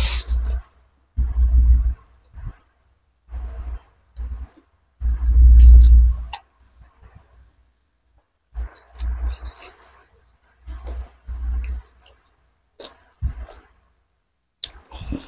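Close-miked eating sounds: chewing and wet mouth sounds of chicken curry and rice eaten by hand, held right up to a microphone. They come in separate bursts with pauses between them, each with a deep rumble and small sharp clicks, the loudest about five seconds in.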